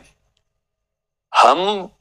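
About a second of dead silence, then a man speaks one drawn-out word in Hindi.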